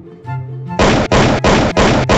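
Four loud knocking thumps in quick succession, about three a second, starting a little before the middle, over background music.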